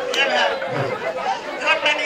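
Only speech: people talking, with no other sound standing out.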